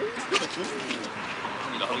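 Indistinct voices murmuring, with a man starting to shout "Taxi!" at the very end.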